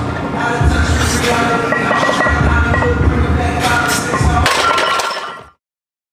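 Background music with a heavy pulsing bass and sharp crashing percussion. It cuts off abruptly about five and a half seconds in, leaving dead silence.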